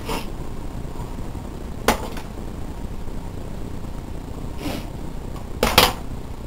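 Hands gathering and twisting hair near the microphone: soft rustling with a sharp click about two seconds in and a quick cluster of clicks near the end, over a steady low hum.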